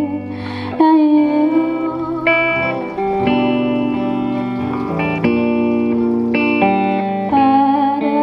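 Instrumental break on two guitars: an electric guitar plays a lead line of held notes over acoustic guitar chords, with the notes changing about once a second.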